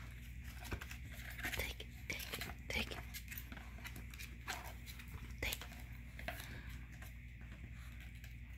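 A Chihuahua mouthing and gnawing a large chew bone, with scattered clicks and scrapes of teeth on the bone and rustling of the fabric throw under it.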